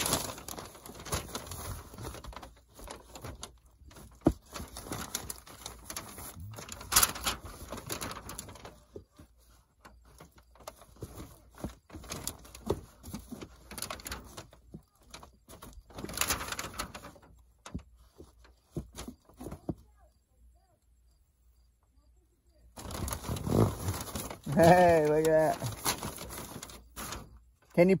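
Irregular rustling and scraping as a yellow flexible gas line is pulled by hand up through the plastic sheeting under a house. After a short pause near the end comes a drawn-out, wavering voice.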